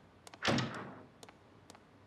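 A door shutting with a single solid thud about half a second in, its sound dying away quickly. Footsteps on a hard floor click about twice a second around it.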